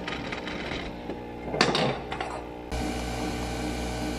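Nespresso Vertuo capsule coffee machine running as it brews a cup, a steady mechanical whir and hum. There is a brief noise about one and a half seconds in. About two and a half seconds in, the hum becomes louder and steadier as coffee streams from the spout.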